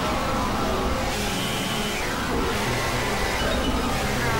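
A dense, layered mix of several recordings playing at once: many overlapping musical tones over a wash of noise, at a steady level with no breaks.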